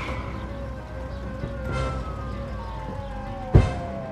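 Film soundtrack music with a long, slowly falling siren-like tone over a steady held note, and a sharp thump about three and a half seconds in.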